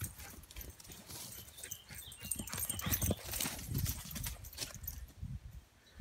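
Footsteps on a dirt path, an irregular run of crunching steps that eases off near the end.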